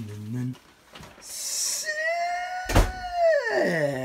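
A person's voice in a long, high-pitched falsetto exclamation that slides down in pitch near the end, after a shorter low held sound at the start, with a single sharp knock, likely a door, partway through.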